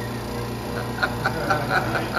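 Laughter in short quick bursts, about four or five a second, starting about a second in, over a steady low hum.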